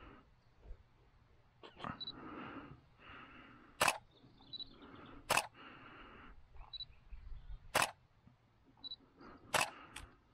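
A camera shutter firing five sharp clicks, one every two seconds or so at uneven gaps, with a soft hiss between the shots.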